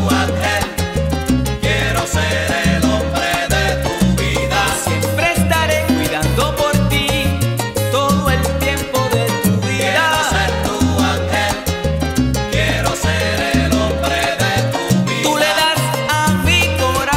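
Salsa music from a studio recording: a band playing with a bass line of short, repeated notes under steady percussion and melodic instrument lines.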